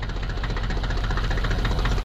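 Tractor engine running steadily, a rapid even chugging of about a dozen knocks a second.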